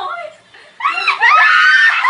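A woman shrieking with laughter: after a brief voice sound and a short pause, a loud, high-pitched squeal starts about a second in and carries on into laughing.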